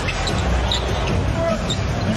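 Basketball being dribbled on a hardwood arena court, with short high sneaker squeaks, over steady arena crowd noise.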